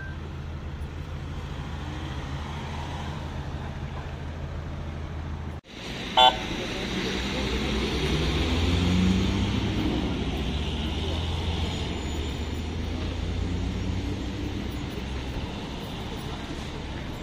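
Vehicle engines idling with a low steady hum, and one short, loud car horn toot about six seconds in; indistinct voices in the background.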